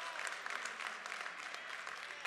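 Church congregation applauding: an even patter of many hands clapping.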